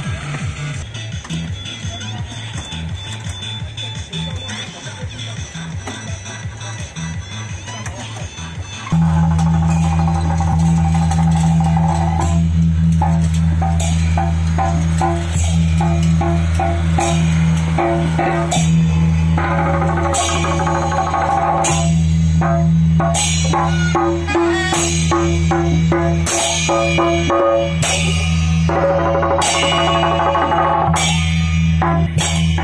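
Temple procession music with a steady beat and rhythmic melody, jumping suddenly louder about nine seconds in, with sharp cymbal clashes coming more often in the second half.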